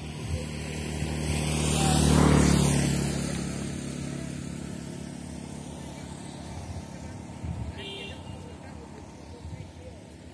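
A motor vehicle drives past, its engine growing louder to a peak about two seconds in and then fading away over the next few seconds.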